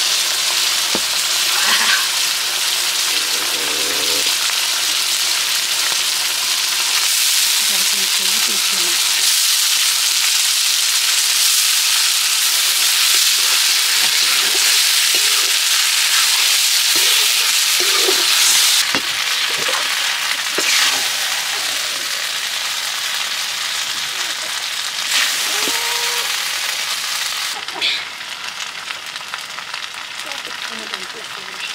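Vegetables and noodles sizzling in a hot metal wok while a metal ladle stirs and tosses them, with occasional scrapes and taps of the ladle against the pan. The sizzle swells about a quarter of the way in and eases off in steps through the second half.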